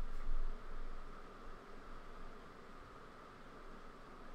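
Steady low hiss of room tone and microphone noise, with a brief low rumble in the first half-second and no distinct sounds after it.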